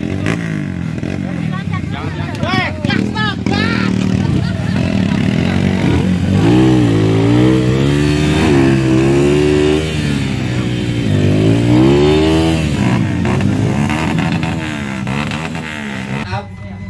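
Dirt bike engines revving hard under load as the bikes struggle up a muddy hill climb, their pitch repeatedly rising and falling, with long drawn-out revs in the middle. Voices are heard among them.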